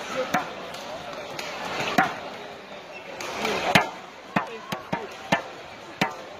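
Badminton rally: sharp racket-on-shuttlecock hits, the loudest about two seconds in and just before four seconds, followed by a quick run of smaller clicks and shoe squeaks on the court, over a steady murmur of crowd voices.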